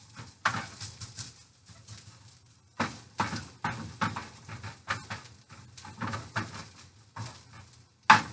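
Slotted spatula scraping and knocking around inside a frying pan: about ten irregular strokes, each starting suddenly and dying away.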